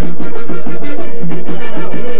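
Vallenato music led by a diatonic button accordion playing quick melodic runs over steady, repeating bass notes, with percussion.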